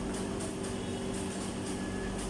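Kitchen knife chopping herbs on a plastic cutting board: quick, light knocks at about three or four a second. Under them runs the steady hum of kitchen ventilation fans.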